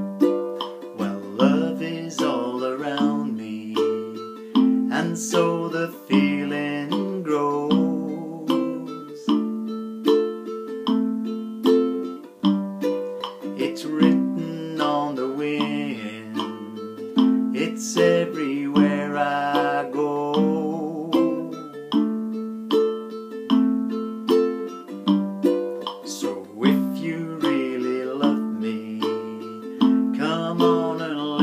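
Ukulele strummed in a slow, steady rhythm through a C, D minor, F and G7 chord round, with a man singing over it.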